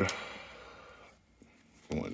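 Soft rustle and slide of a stack of trading cards being picked up and handled, fading out about a second in.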